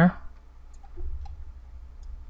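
A couple of faint computer mouse clicks over a low steady hum, after the tail of a spoken word at the very start.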